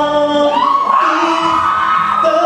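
Man singing into a microphone over acoustic guitar, sliding up about half a second in to one long held high note.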